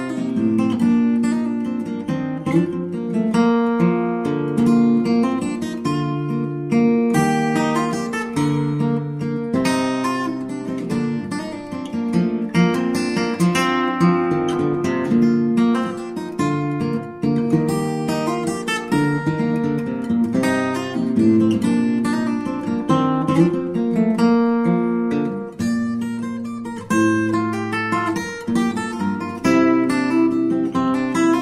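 Background music: acoustic guitar playing a continuous stream of plucked and strummed notes.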